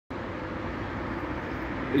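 Steady outdoor city background noise: an even low rumble with a faint steady hum.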